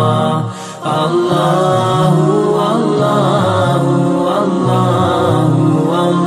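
Background devotional music of voices chanting in repeated, sustained phrases, an Islamic zikr of "Allahu". The sound dips briefly just under a second in.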